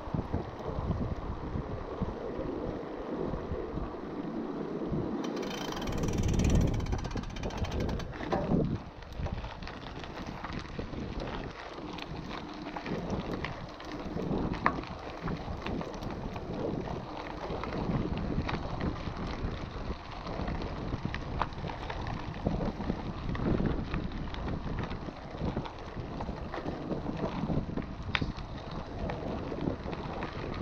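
Mountain bike rolling over boardwalk planks and then gravel: tyres crunching, with frequent small clicks and rattles from the bike. Wind buffets the microphone throughout.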